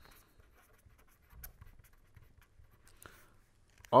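Pen scratching faintly on paper in short strokes as words are handwritten.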